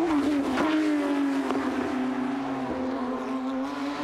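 Porsche 911 GT3 Cup race car's flat-six engine at high revs passing close by. Its note falls in pitch during the first second as the car goes past, then holds fairly steady.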